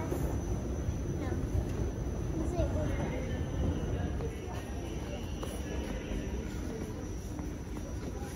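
Steady low rumble of a moving escalator with indistinct chatter of voices around it.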